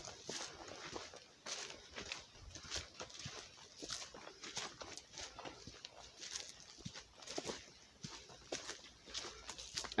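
Faint footsteps crunching and rustling through dry leaf litter, in irregular steps about one or two a second.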